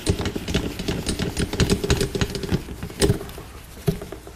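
Flip-chart paper being handled and written on with a marker: a busy run of rustles, taps and squeaky scrapes, with sharp louder knocks about three seconds in and again near the end.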